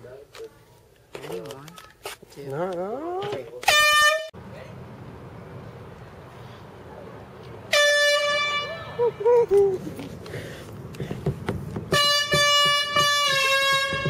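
Handheld canned air horn blaring three times: a short blast about four seconds in, a blast of about a second around eight seconds, and a longer blast of about two seconds near the end, whose pitch sags slightly as it goes on.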